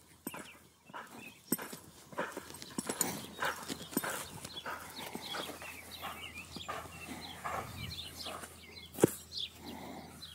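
Irregular footfalls of a horse and a person on soft arena sand, with small birds chirping in the background. One sharp knock about nine seconds in is the loudest sound.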